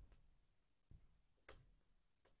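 Chalk writing on a blackboard, very faint: near silence with two soft strokes of the chalk about one and one and a half seconds in.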